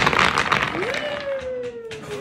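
A tower of painted wooden stacking stones toppling and clattering onto a hardwood floor, a quick run of knocks that dies away under a second in. Then a long, high vocal 'ooh' that rises and slowly slides down in pitch.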